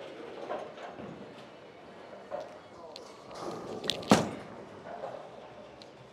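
Bowling alley hall noise with faint background chatter, then about four seconds in a single sharp knock as a bowling ball lands on the wooden lane at release.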